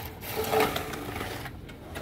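Aluminium straightedge dragged across a freshly spread cement-and-sand layer, a gritty scraping that is loudest about half a second in.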